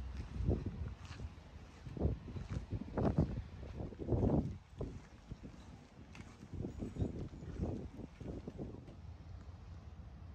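Footsteps on pavement, irregular thuds from someone walking while carrying the camera, over a low wind rumble on the microphone.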